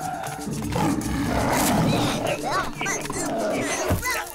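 Cartoon tiger growling as it tangles with a wolf, with a few short vocal cries in the second half, over background music.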